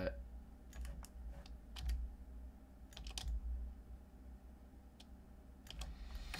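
Scattered clicks and taps of a computer keyboard and mouse in a few small clusters, over a steady low hum.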